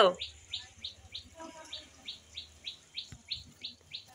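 A bird calling with a steady run of short, high, falling chirps, about four a second.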